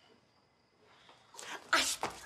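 A sudden, loud, breathy vocal burst like a gasp, starting about a second and a half in after near-quiet room tone.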